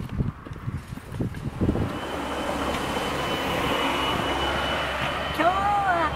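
A road vehicle passing close by, its noise swelling from about two seconds in and holding for a few seconds, with a faint thin whine in it. Footsteps on pavement in the first couple of seconds, and a woman's voice begins near the end.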